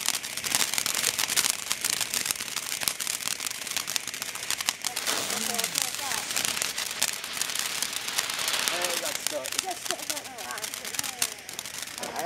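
Red Star ground fountain firework burning: a steady hiss of spraying sparks with rapid, dense crackling pops.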